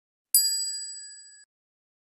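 A single notification-bell ding sound effect, struck once and ringing with a few high, clear tones that fade over about a second before cutting off.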